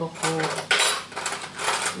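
Dishes and utensils clattering as they are handled, in three short bursts; the sharpest comes about three quarters of a second in.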